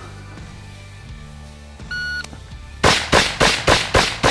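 A shot timer gives one short beep, and just under a second later a carbine opens fire in rapid, evenly spaced shots, about three a second, about five of them before the end. Background music runs underneath.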